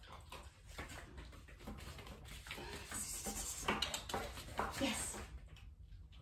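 Faint taps and shuffles of a small dog moving around a plastic bucket on foam floor mats, with brief soft sounds of a woman's voice after about three seconds.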